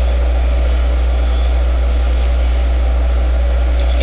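Steady low-pitched hum with a faint hiss behind it, unchanging throughout.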